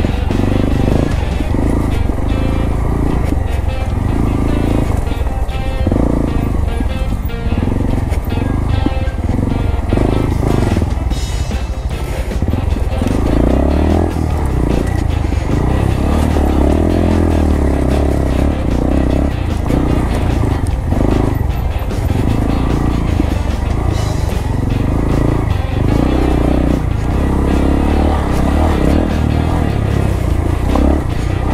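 Honda Grom's single-cylinder four-stroke engine running as the bike is ridden along a dirt trail, heard under background music that plays throughout.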